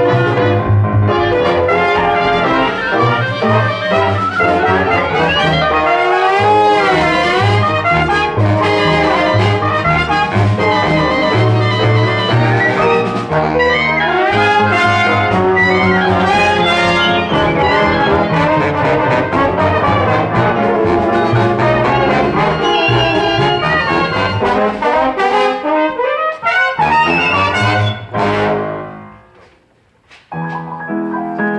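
Live pit orchestra playing instrumental scene-change music, saxophones and clarinet among the players, over a moving bass line. Near the end the music dies away to a brief near-silence.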